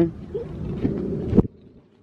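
Low rumble of wind buffeting a handheld camera's microphone, with a brief voice sound at the start; it cuts off abruptly with a click about a second and a half in.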